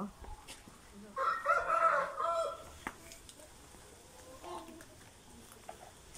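A rooster crows once, about a second in, for about a second and a half.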